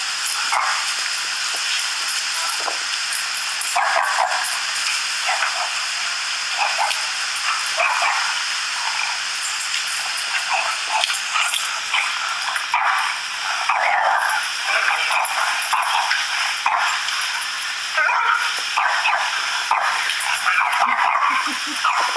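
Dog barks in many short, thin bursts with little low end, over a steady hiss: a Doberman barking at a video of himself barking at other dogs, with the recorded barking playing on a small speaker.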